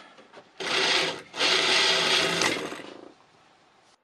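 A wooden dowel pushed along a clamped chisel blade in a jig, the edge scraping a groove down its length. There are two strokes, a short one about half a second in and a longer one of nearly two seconds, before the sound dies away.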